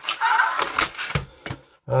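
Cardboard retail box and its plastic sleeve being handled and slid about: a rustling scrape in the first second, broken by a few sharp taps.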